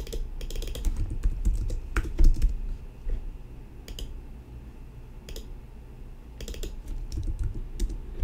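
Computer keyboard typing: quick runs of keystrokes as shadow values are entered into a settings field, densest in the first couple of seconds and again near the end, with a few single key clicks in between.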